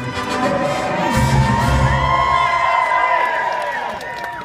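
Crowd cheering and whooping over orchestral film music played through a show's speakers.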